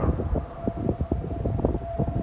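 Wind buffeting the microphone in irregular rumbling gusts, with a faint steady tone running beneath it.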